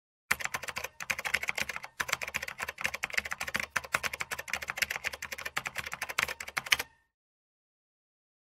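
Computer-keyboard typing sound effect: a fast, dense run of key clicks that breaks off briefly about one and two seconds in, then stops about a second before the end.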